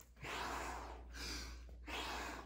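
Two heavy breaths from a man working hard at a bodyweight exercise, each lasting about a second.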